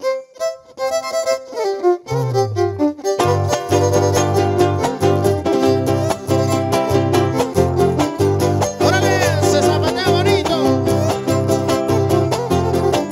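Huapango trio playing: a violin plays the opening melody alone, low bass notes come in about two seconds in, and about a second later the guitar and jarana join with a driving strummed rhythm under the violin.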